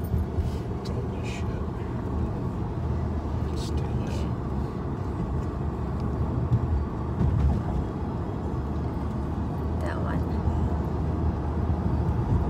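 Steady engine hum and tyre noise inside the cabin of a moving car.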